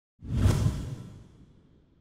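A trailer whoosh sound effect with a deep low end, hitting about a quarter of a second in and fading away over the next second and a half.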